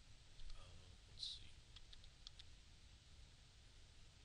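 Faint computer mouse clicks against near-silent room tone: one about half a second in, a slightly louder one just over a second in, then a quick run of four or five small clicks around two seconds in.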